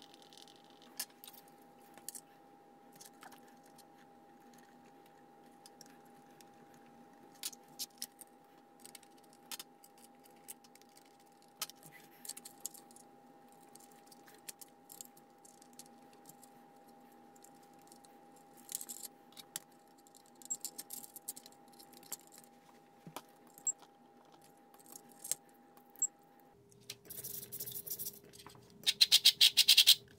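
Small tools and plastic and metal parts clicking, scraping and rattling as a 3D-printed RC car is assembled by hand, over a faint steady hum. A quick run of loud clicks comes near the end.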